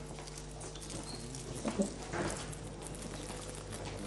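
Footsteps and shuffling on a studio floor, scattered light knocks over a steady electrical hum, with a slightly louder patch about two seconds in.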